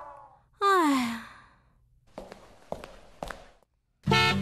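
A woman's sigh, one voiced breath falling in pitch, about half a second in, followed by a few faint clicks.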